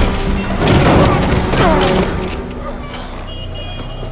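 Action-film soundtrack: dramatic score music layered with heavy booms and crashing impacts of a fight, easing off to a quieter music bed about halfway through.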